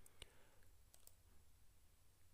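Near silence with two faint computer mouse clicks just after the start.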